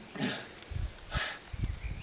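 A man sniffling as if crying: two short, sharp sniffs about a second apart, the first trailing into a brief falling moan.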